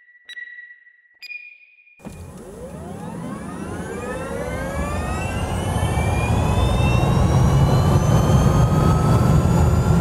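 Start-countdown beeps, the last one higher in pitch, then a vehicle sound effect taking off: a whine that rises slowly in pitch over a deep rumble, growing louder throughout.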